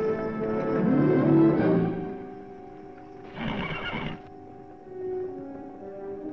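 Film score music plays throughout, louder for the first two seconds and then softer and held. About three seconds in, a horse whinnies once for about a second over the music.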